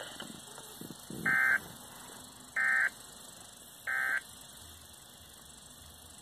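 Three short, identical warbling data bursts, about 1.3 s apart, from a Midland weather alert radio's speaker: the SAME digital code that frames each weather-radio alert message.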